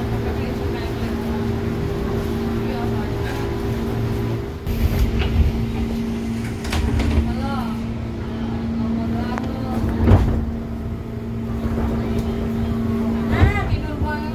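Interior of a KRL Commuter Line electric train car standing at a platform, with a steady electrical hum from the car's onboard equipment. About five seconds in there is a louder, wide-band surge that fits the sliding doors closing before departure.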